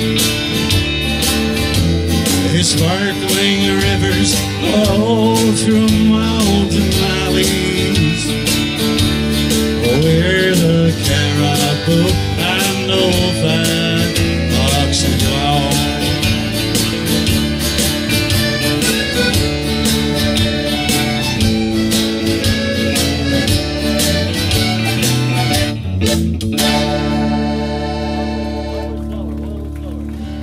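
A folk band of strummed acoustic guitar, electric bass and button accordion plays an instrumental passage with a steady strummed beat. About 26 seconds in, the playing stops on a final chord that is held and fades away: the end of the song.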